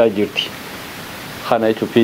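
A man speaking, with a second-long pause in the middle filled by a steady hiss.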